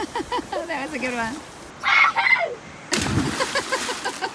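Excited voices whooping and shouting, loudest about two seconds in. About three seconds in comes a sudden splash as a person jumps feet-first off the side of the boat into the sea.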